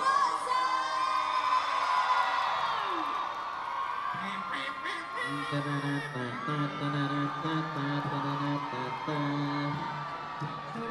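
A crowd of fans screaming and cheering in high voices. About four to five seconds in, music starts under the screams, with low held notes in a repeating pattern.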